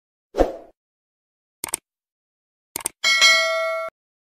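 End-screen subscribe-animation sound effects: a short thump, then two quick double clicks like a mouse, then a bright notification-bell ding that rings for nearly a second and cuts off suddenly.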